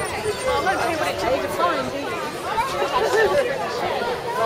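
Chatter of people in a crowd: several voices talking at once, with no clear words.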